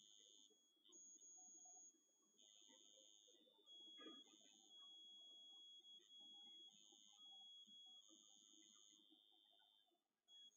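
Near silence, with a faint high-pitched electronic tone that cuts in and out irregularly over low room noise.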